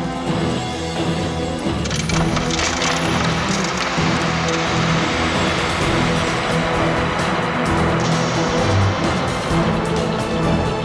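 Coins clinking and spilling in a dense cascade from about two seconds in until about eight seconds, over orchestral soundtrack music.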